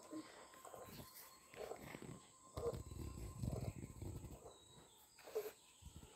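Faint piglet sounds while suckling at a dog's teat: a few short grunts, with a low, rough, pulsing stretch in the middle.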